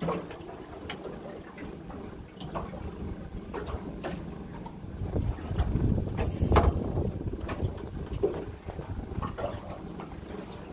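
Wind buffeting the microphone out on open water, a rough rumble that swells loudest about six seconds in. Scattered light clicks and taps run through it.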